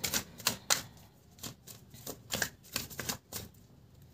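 A deck of tarot cards being shuffled by hand: a run of uneven, crisp clicks and flicks as the cards slip against each other.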